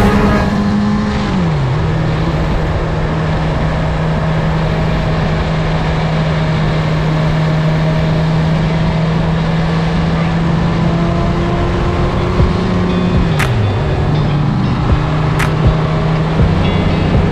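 Suzuki Hayabusa's inline-four engine running at steady cruising revs, heard from the rider's seat over a rushing haze of wind on the microphone. The engine note dips and recovers twice, about a second in and near the end, with a few sharp ticks near the end.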